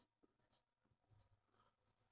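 Near silence, with very faint strokes of a felt-tip marker writing on a whiteboard.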